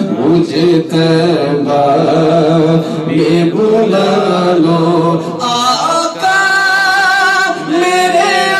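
A male naat reciter sings unaccompanied into a microphone over a low, pulsing vocal drone from the men around him. About five and a half seconds in, his voice climbs to a high, long, wavering held note.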